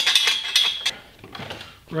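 Steel tubing clinking and scraping against the tube bender's die as it is set in position, with a high ringing tone through the first second that cuts off suddenly.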